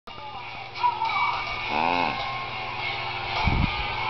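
Music-like sound with one short pitched call that rises and falls in pitch about two seconds in, and a low thump a little before the end.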